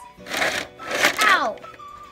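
A voice crying out "ow", falling in pitch, after a short noisy rustle.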